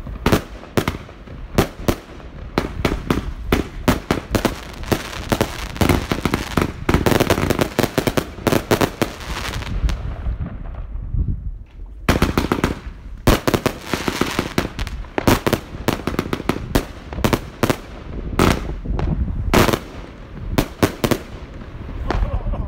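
DPA 8010 consumer firework battery (a 147-shot cake) firing a rapid run of shots and bursting stars, thinning out about ten seconds in. After a short lull it fires again rapidly from about twelve seconds in.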